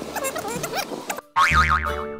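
Outdoor sound that cuts off about a second in. After a brief gap, a cartoonish countdown jingle starts, with a high tone wobbling up and down several times a second over steady bass notes.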